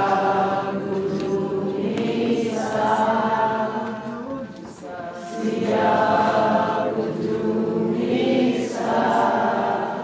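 A choir singing a slow hymn in long held phrases, with a short breath between phrases about five seconds in.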